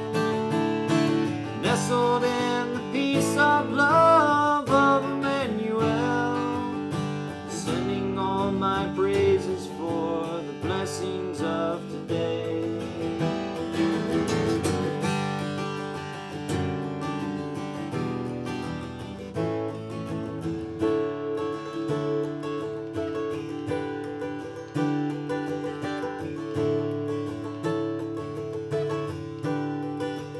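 Steel-string acoustic guitar played solo, picking and strumming an instrumental break between verses of a country song.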